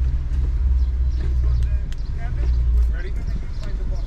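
Low, steady rumble of a car idling in park, heard from inside the cabin, with faint voices outside.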